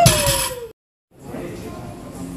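A short shout falling in pitch, with the rattle and knock of iron plates on a loaded deadlift bar just set down. It is cut off abruptly less than a second in, after which there is only faint, steady gym background noise.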